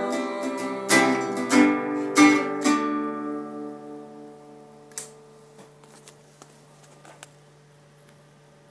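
Acoustic guitar strumming its last few chords, the final chord left to ring out and fade away over a couple of seconds. A few faint clicks and knocks follow near the end.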